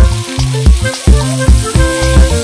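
Fish pieces sizzling as they shallow-fry in oil in a pan, under background music with a steady beat.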